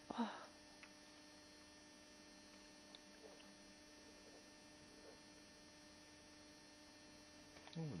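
Near silence: a steady low electrical hum in the recording, with a brief short sound just after the start.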